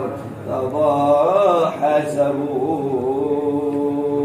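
A man's solo voice chanting Arabic verse unaccompanied, in long, wavering held notes with a short break for breath about half a second in.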